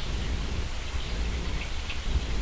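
Steady background noise with a low rumble and no distinct events.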